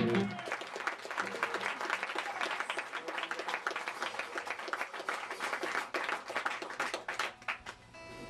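A rock band's final chord stops just after the start, then an audience claps and applauds for several seconds, thinning out near the end.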